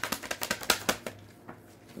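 A deck of tarot cards being shuffled by hand: a quick run of crisp card flicks that stops about a second in.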